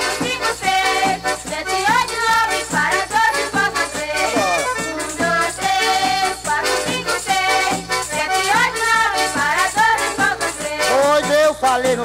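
Instrumental break of a Pernambuco pastoril folk band: melody instruments playing a tune with pitch slides over a steady rattle-and-percussion rhythm.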